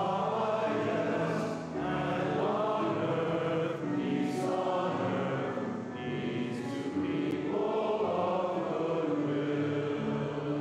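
Congregation singing a hymn together in a slow melody of long held notes that step from one pitch to the next.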